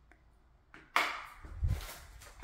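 Handling noise from a phone being carried by someone walking: a sharp click about a second in, then a dull low thump.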